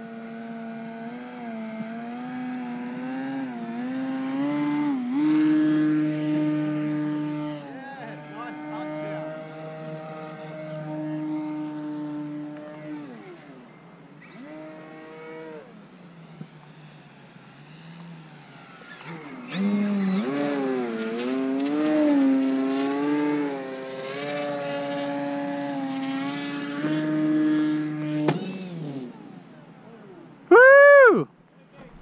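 Motor and propeller of a Flex Cap 232 aerobatic RC model plane in flight, a buzzing drone whose pitch rises and falls with the throttle. It fades for a few seconds around the middle, comes back louder, then cuts off shortly before the end as the plane lands.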